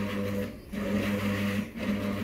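Stepper motor of a DIY motion-control camera robot running in short spurts, a steady low hum with an overtone that breaks off briefly about half a second in and again near the end. It is running with high vibration: the rig is unloaded, and the builder says that more weight on it would make the movement quieter.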